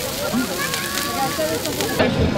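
Large outdoor bonfire of burning branches, crackling with scattered sharp pops, under the voices of a crowd talking.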